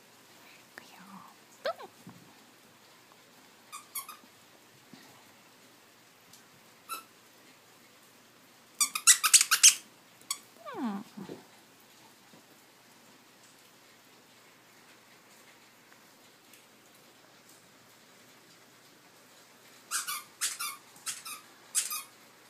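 Squeaky dog toy squeaked in quick runs of high squeaks as a toy poodle plays with it. A couple of single squeaks come early, a loud rapid burst about nine seconds in, and another run of squeaks near the end.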